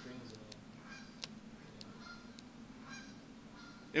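Faint, distant voices of students answering the lecturer's question from the room, over a steady low hum, with a few sharp clicks.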